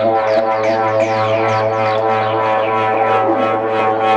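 Electronic dance music from a DJ set, played loud over a club sound system: a sustained droning chord over a steady bass note, with a fast high percussion pattern of about four hits a second.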